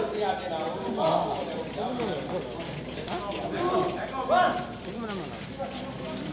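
Several people talking and calling out over one another, with a few sharp hollow knocks of a sepak takraw ball being kicked.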